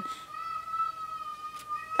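A young child's voice from the room upstairs: one long, high-pitched held note, slightly muffled by the ceiling.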